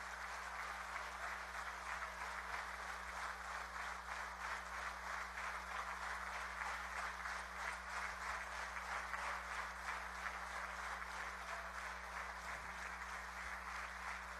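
A crowd applauding steadily: dense, even clapping from many hands.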